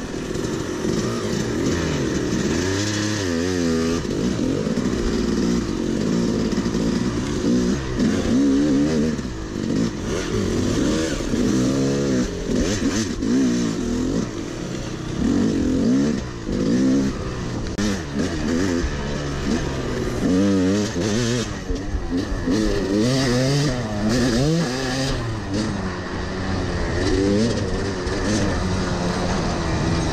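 Yamaha dirt bike engine being ridden hard along a trail, its pitch repeatedly rising and falling as the throttle opens and closes through the corners.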